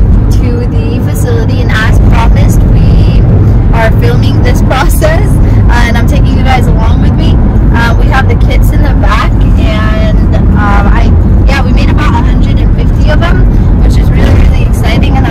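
A woman singing, her voice rising and falling with some held notes, over the steady low rumble of road and engine noise inside a moving car.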